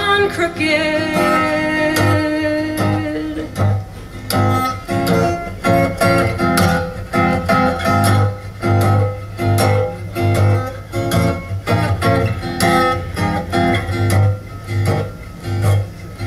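Acoustic guitar played in an instrumental break of a folk song: a steady rhythm of picked notes over a recurring low bass note, after a held note in the opening seconds.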